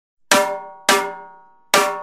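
Three sharp metallic percussion strikes, unevenly spaced. Each rings with several overtones and fades over about half a second, in a bell-like tone typical of a cowbell or a cymbal bell in a drum kit.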